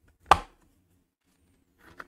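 The snap clasp of a clear plastic product box clicking open once, sharply, followed by a faint rustle near the end as the lid comes up.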